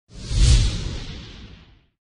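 A whoosh sound effect with a deep rumble underneath, swelling quickly to a peak about half a second in, then fading out over the next second and a half: a news-channel logo intro sting.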